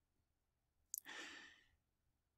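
A man's mouth click and a short, faint intake of breath about a second in, between spoken phrases; otherwise near silence.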